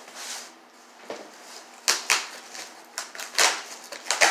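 Cardboard shipping box being opened: packing tape slit and torn, and the cardboard flaps scraped and pulled apart, in a run of irregular scratchy rips with two sharper ones about two and three-and-a-half seconds in.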